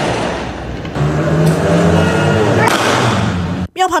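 Raw audio of an eyewitness phone recording: a modified car's engine rumbling, mixed with people's voices, cutting off abruptly near the end.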